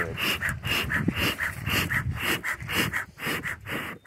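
Honey bee smoker's bellows pumped rapidly, pushing quick, even puffs of air through the can, about three a second, to fan freshly lit paper into a fire.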